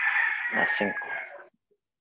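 A rooster crowing in the background: one long call with a held tone that falls slightly, ending about a second and a half in, picked up over a video-call microphone.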